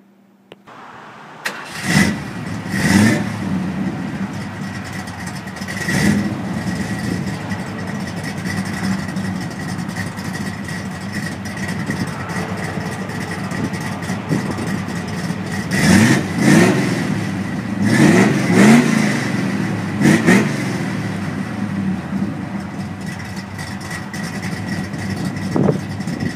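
A 1960s Ford full-size car's engine starts about a second and a half in and is revved in short blips, a few early on and a cluster of several about two-thirds of the way through. It idles steadily in between.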